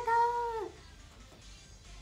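A young woman's high, drawn-out, sing-song "arigatou" that ends under a second in, then faint background music.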